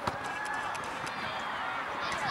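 Faint, distant voices of girls calling to each other during an outdoor football game, with a single knock of a football being kicked at the start.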